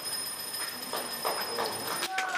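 Live stage play heard from the auditorium: faint scattered clicks and small stage sounds, under a steady high-pitched whine in the recording.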